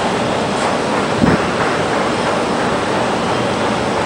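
A steady rushing noise, with one short low thump about a second in.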